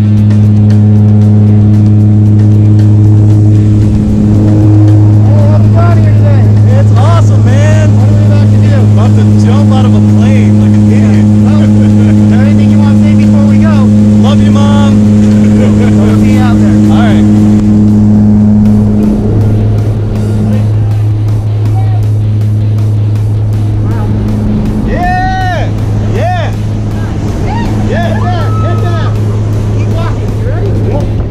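Propeller aircraft's engines running steadily, heard from inside the cabin as a loud, deep, even hum. Voices call out over it several times.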